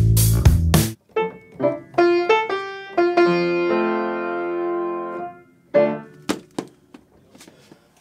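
About a second of band music with drums and bass cuts off. Then an upright acoustic piano plays a short phrase of chords, ending on a chord that is held and rings out for about two seconds. A brief note and a few soft knocks follow near the end.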